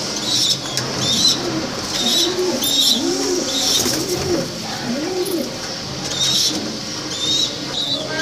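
Domestic pigeons cooing in a loft: several low coos that rise and fall in pitch, bunched in the first half to two-thirds, with short high chirps recurring throughout.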